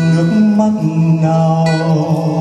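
A man singing long held notes into a microphone, accompanied by a steel-string acoustic guitar.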